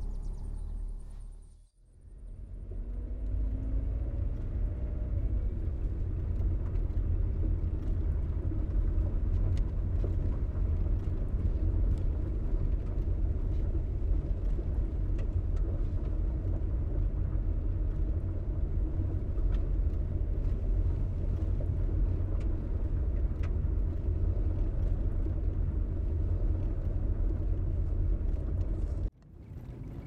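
Car engine and road rumble heard from inside the cabin while driving on a dirt road: a steady low drone, with the engine note rising a few seconds in as the car picks up speed. The sound dips out briefly near the start and again just before the end.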